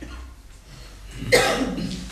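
A single cough from a person, sudden and loud, about halfway through, against a low steady hum.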